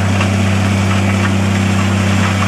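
Flory tracked pruning mulcher running steadily under load as its hammer mill shreds walnut prunings: a steady low engine hum under a constant noisy rush, with a few faint crackles.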